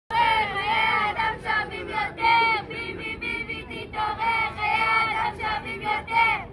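A group of protesters, mostly high women's voices, chanting a slogan together in unison in loud, repeated short phrases.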